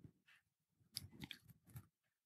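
Near silence, with a few faint short clicks clustered about a second in.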